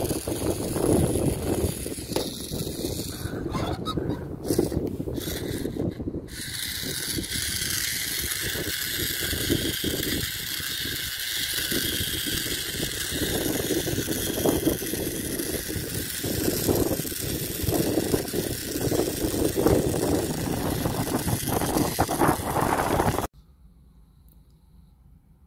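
Wind buffeting the microphone, with a faint, steady high whine under it from the small geared motor of a solar-powered toy robot running in sunlight. The sound cuts off suddenly near the end.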